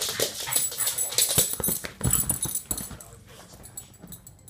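A small dog making excited play noises while rolling and wriggling about, with scuffling and rubbing. It is loud for about three seconds, then dies down.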